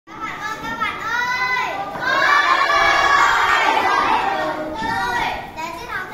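Children's voices: a single child's high voice calling out, then a class of children calling out together for a couple of seconds, the loudest part, then one voice again.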